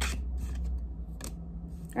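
Light Seer's Tarot cards being handled and laid on a table: three short card snaps and rustles, at the start, just past a second, and near the end, over a steady low hum.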